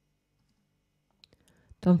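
Mostly near silence, then a few faint clicks from computer use, a keyboard shortcut and mouse at the IDE, a little past a second in. A woman's narrating voice begins near the end and is the loudest sound.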